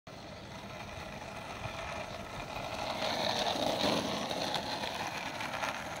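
Skateboard wheels rolling on asphalt: a steady rolling rumble that swells about three to four seconds in, then eases.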